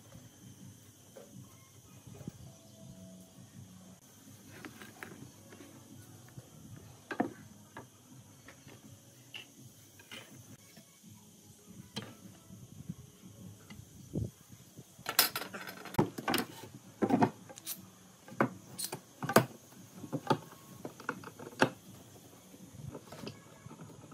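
Light taps and clicks of a metal ruler, try square and marker against hollow green bamboo poles on a workbench, sparse at first. About fifteen seconds in comes a run of sharper, louder knocks and clatter as the poles are handled, lasting some six seconds.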